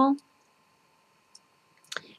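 The end of a spoken word, then a pause of quiet room tone with a faint steady electrical whine and a few small clicks, the loudest just before the end.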